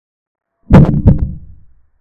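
Chess board animation's piece-capture sound effect: two sharp clacks about a third of a second apart, trailing off quickly.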